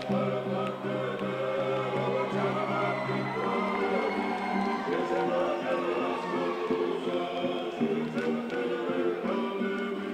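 Georgian folk polyphonic singing: a choir in several voice parts, over a low held drone for the first few seconds that then gives way to changing chords.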